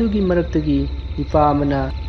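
A voice narrating in Manipuri in short phrases, over a steady low hum.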